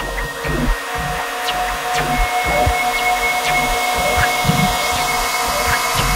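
Experimental electronic music: a dense, hiss-like noise wash with held synth tones through the middle, over irregular low bass hits.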